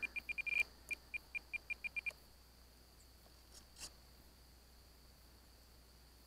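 Spektrum DX9 radio transmitter beeping as the rudder trim is stepped: a quick run of about a dozen short, high beeps at one pitch over two seconds, with one longer tone among them early on. A single faint click follows later.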